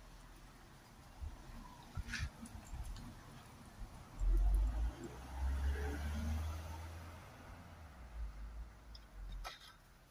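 Small hand file scraping at a thin metal bracket, with sharp metal clicks about 2 seconds in and again near the end. A low rumble underneath is loudest around the middle.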